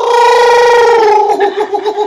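A person's high, drawn-out vocal 'ooh' held for about a second with a slight fall in pitch, then breaking into quick laughter.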